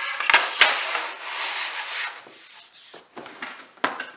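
Plastic LEGO Duplo baseplates sliding and scraping across a tabletop, with a couple of sharp knocks in the first second. The scraping dies down about two seconds in, and a loud knock comes near the end.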